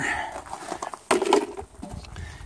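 Handling noises with one sharp knock about a second in, as the plastic battery box cover comes off and the battery shunt is picked up.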